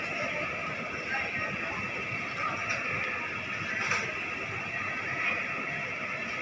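Indoor supermarket ambience: a steady hubbub of indistinct shoppers' voices over a general background hum, with a brief click about four seconds in.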